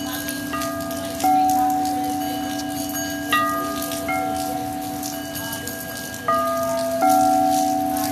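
Frosted quartz crystal singing bowls ringing: a steady low hum sounds throughout, and four strikes add clear ringing tones that fade slowly, the last two close together near the end. Rain patters faintly underneath.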